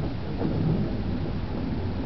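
Steady low rumbling noise, a little louder from about half a second to one second in.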